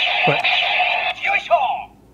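Memorial Edition Gaburevolver toy gun playing a tinny electronic sound through its small built-in speaker after a button press. It is not yet the theme song, and it cuts off shortly before two seconds in.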